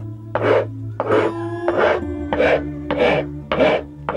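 Hand file rasped back and forth over the wooden neck of a çiftelia being shaped, about six scraping strokes in a steady rhythm.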